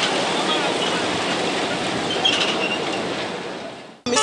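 Road traffic on a busy urban road: a steady wash of engine and tyre noise that fades out near the end.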